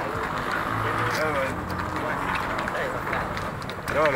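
City street ambience: a steady hum of traffic with faint voices talking in the background.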